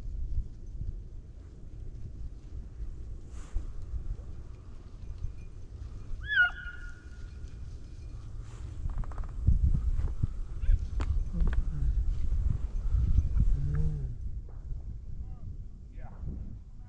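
Wind rumbling on the microphone, with a short high yelp from a distant beagle about six seconds in and fainter calls near the end.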